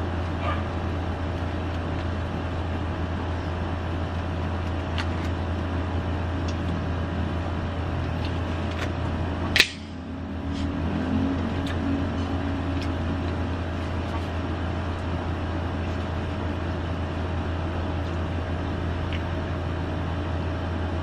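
Quiet mouth and chewing sounds of someone eating a shawarma wrap, as small scattered clicks, over a steady low background hum. A single sharp sound stands out about halfway through.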